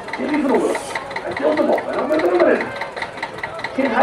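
Small vintage tractor's engine idling with a steady rhythmic ticking, about five ticks a second, under a man's voice.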